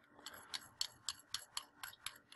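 Faint, irregular small clicks and taps of metal e-cigarette parts being handled and fitted into the top receptacle of an Innokin iTaste VTR mod, about a dozen over two seconds.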